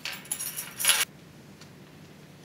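A brief clatter and jingle of small hard objects being handled at a desk, lasting about a second and loudest just before it stops suddenly.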